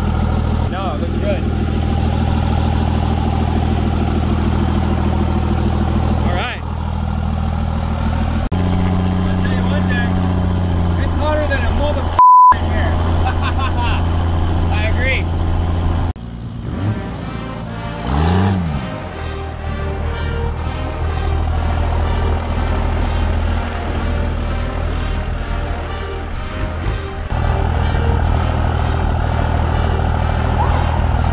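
A 6.7-litre Cummins inline-six turbodiesel swapped into a Plymouth Barracuda, running steadily as the car is driven, its note changing abruptly at several points. A short, loud beep cuts in about twelve seconds in.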